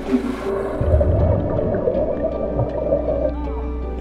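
Muffled underwater plunge over background music: a brief hiss of entry, a low thump, then a rush of bubbles for a couple of seconds as a person goes under the water, heard as if from below the surface.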